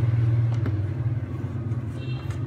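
A low, steady motor-like rumble, loudest in the first second, with a couple of light clicks of objects being handled on a bench.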